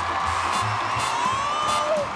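Swing-style backing music with a steady bass beat, under audience cheering with a whoop rising in pitch about halfway through.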